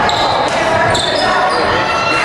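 Basketball game sounds in a gym: players' sneakers squeaking on the hardwood court twice, voices calling out, and the ball bouncing, all with the echo of a large hall.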